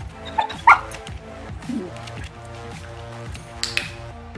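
Two short, high yips from a Samoyed about half a second in, then a lower whine near two seconds, over background music. A brief sharp noise comes near the end.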